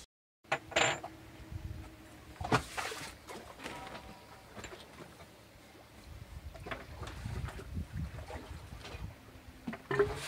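Light clicks and knocks of hand tools and metal parts being handled on a sailboat autopilot's drive unit, a few sharp ones in the first three seconds, then scattered softer ones. A faint low rumble of wind and sea comes in after about six seconds.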